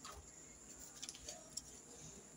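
Near silence: faint room tone with a few faint ticks and a brief faint tone about a second and a half in.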